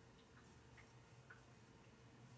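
Near silence: a low room hum with a few faint, irregular ticks from a crochet hook working cotton thread.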